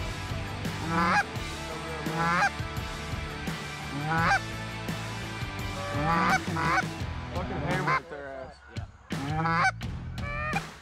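Canada-goose-style honks, one every second or two, coming quicker and closer together in the last few seconds.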